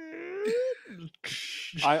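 A man's drawn-out wailing vocal sound, dipping and then rising in pitch for under a second, followed by a short breathy hiss.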